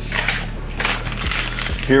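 Plastic packaging rustling and crinkling in irregular bursts as a wrapped item is pulled out of a cardboard box.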